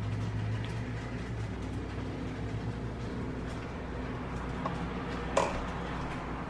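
Quiet kitchen room tone: a low steady hum that fades out about a second and a half in, with a few faint light clicks and one sharper click near the end.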